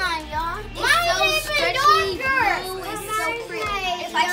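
Young children's high-pitched voices talking.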